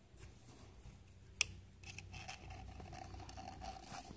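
Small screwdriver scraping and clicking against the pleated metal mesh of a K&P reusable oil filter element, working off caked engine sludge, with one sharp metallic click about a second and a half in.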